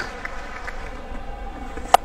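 Steady background noise of a cricket ground's crowd, then near the end a single sharp crack of a cricket bat striking the ball on a slog sweep.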